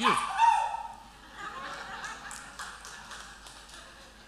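Congregation laughing at a joke: a burst of laughter right at the start that trails off into scattered chuckles.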